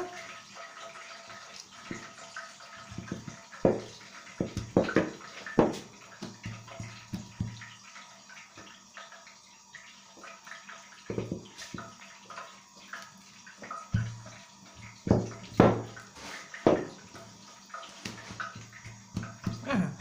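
A wooden rolling pin and hands working a ball of yeast dough on an oilcloth-covered table: irregular soft knocks and thumps, clustered in two spells, over a low hum that comes and goes.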